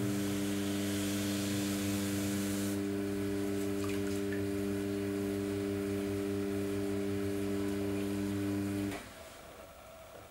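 Electric pottery wheel motor running with a steady hum, cutting off suddenly about nine seconds in as the wheel is switched off. For the first three seconds a rushing hiss rides over it as a wet sponge is held against the spinning clay.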